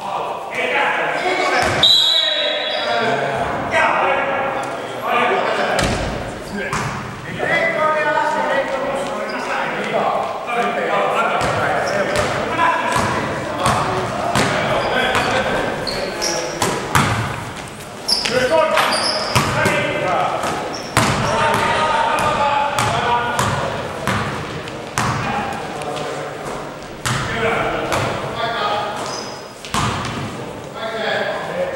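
Indoor basketball game: the ball bouncing on the hard court in repeated sharp knocks, with players calling out to each other. Everything echoes in a large sports hall.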